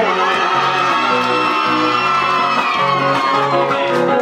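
Live band music with strummed acoustic guitars, while a male singer holds one long, high note into a microphone that rises slightly and then slowly falls away.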